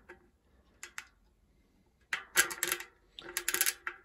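Hope RS1 rear hub freewheeling as the freehub body is turned by hand: its four pawls ratchet over the teeth in the hub shell. Two short runs of rapid clicking, the first about two seconds in and the second just after three seconds.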